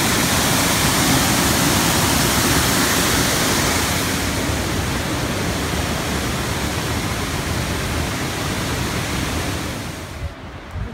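Waterfall and whitewater rapids: a loud, steady rush of falling and tumbling water that turns slightly duller about four seconds in.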